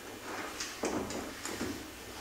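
A few soft knocks and rustles, about four short ones in two seconds, over a steady low hum.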